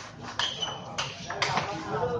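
Celluloid-type table tennis ball clicking off the bats and table in a rally: four sharp taps in under two seconds, one leaving a brief ring.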